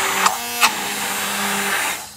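Immersion (stick) blender whipping thick emulsified body butter, its motor running steadily and stopping shortly before the end. Two brief sharp knocks come within the first second.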